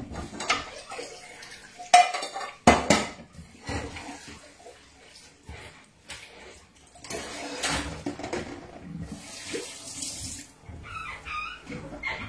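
Dishes and pots being handled at a kitchen sink: several sharp knocks and clatters in the first three seconds, then a tap running for a few seconds in the second half.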